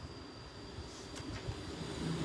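Quiet pause in speech: a low steady background rumble with a faint high-pitched whine, and a couple of small faint clicks about a second in.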